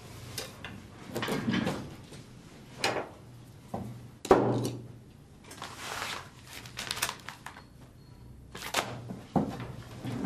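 A series of knocks, clunks and short rustles as things are handled at a wooden desk, drawer and desk items moved about, with the loudest thump about four seconds in.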